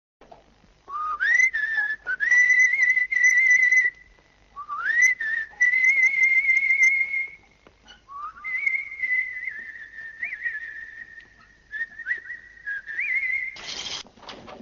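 A person whistling a slow tune, unaccompanied, in three long phrases; each opens with a slide up into a high, slightly wavering note that is held for several seconds. A brief burst of noise comes near the end.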